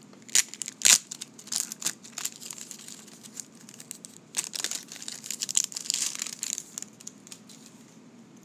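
The crimped plastic wrapper of a 1990 Score football card pack crinkling and tearing as it is opened by hand. The crackles come in irregular bursts, the sharpest about a second in and a longer stretch of crinkling just past the middle.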